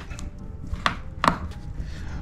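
Interior liner of an Alpinestars R10 motorcycle helmet being pulled away from the shell by hand, giving a few short clicks.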